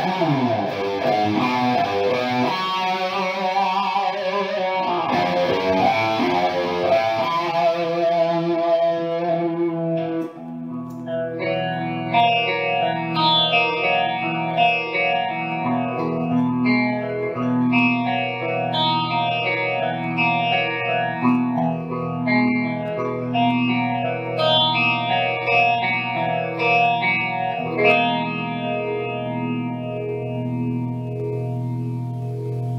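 A 2016 Gibson Les Paul Standard electric guitar played through effects. It opens with a distorted passage and a slide down in pitch. About ten seconds in it switches to clean, chorus-laden picked arpeggios that run on in a repeating pattern.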